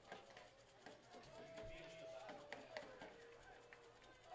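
Near silence: faint open-air ballpark background, with a faint held tone that steps down in pitch about halfway through and a few light clicks.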